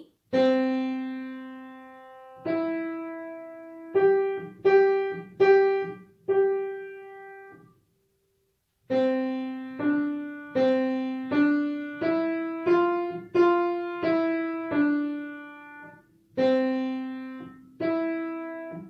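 Yamaha piano played with the right hand alone: a slow single-note melody that starts on middle C and climbs to G, each note struck separately and left to fade. There is a pause of about a second midway.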